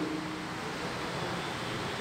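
A steady, even hiss of room tone and recording noise, with nothing else happening.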